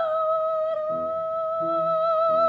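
Classical chamber music: a long high note glides down and is then held steady, and soft, short accompanying chords come in below it about halfway through.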